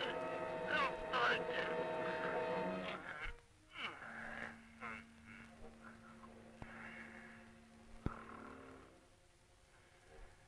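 Old film soundtrack: held musical notes under a person's strained, gliding vocal sounds for the first three seconds, then a single long low note held for about four seconds. There is a sharp click near the end.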